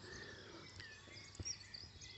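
Quiet outdoor garden ambience with a few faint, distant bird chirps and a single soft click about a second and a half in.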